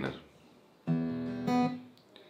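Acoustic guitar strumming an E minor chord: a strum about a second in and a second stroke half a second later, the chord ringing briefly before fading.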